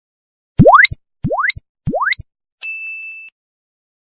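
Animation sound effects: three quick rising 'bloop' swoops about two-thirds of a second apart, then a short, high bell-like ding.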